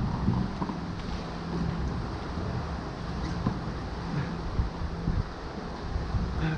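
Wind buffeting the microphone over choppy water, with a low steady hum and a few light knocks.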